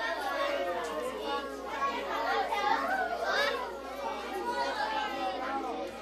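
Many children's voices overlapping, chattering and calling out at once.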